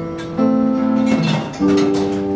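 Live music: a strummed acoustic guitar with steady held notes underneath, changing to a new chord about a second and a half in.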